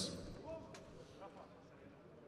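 The echo of the arena public-address announcement dying away in a large, nearly empty hall, leaving faint room tone.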